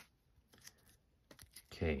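A few faint clicks and taps of a stack of trading cards being handled after being pulled from the pack, then a man starts speaking near the end.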